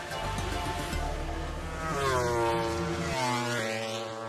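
A MotoGP race bike's engine, heard over background music. About two seconds in, its pitch falls steadily for about a second as the bike slows or passes, then holds at a steady note.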